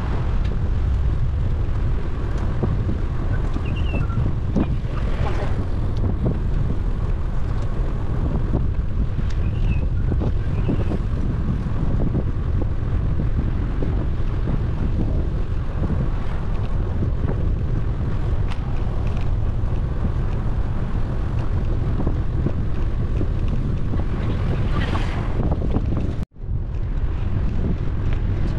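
Wind buffeting the microphone of a camera moving along on a bicycle: a steady low rumble, broken by a sudden brief dropout about two seconds before the end.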